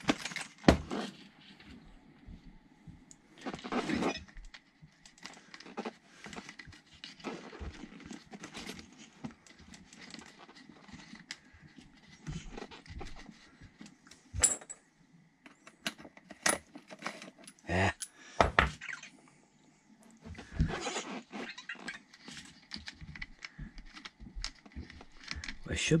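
Hand-work on a workbench: scattered clicks, taps and light rattles of plastic and small metal parts as a wheel is fitted back onto an RC truck's front hub, with a few brief louder knocks.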